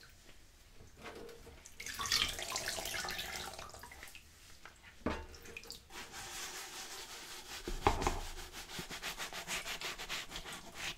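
A sponge scrubbing a plastic colander in soapy sink water, in several rubbing passes with two sharp knocks of the colander. Near the end the scrubbing becomes quick, even strokes.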